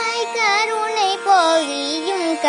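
A boy singing a Tamil devotional song in Carnatic style, his voice sliding through ornamented turns in pitch over a steady drone.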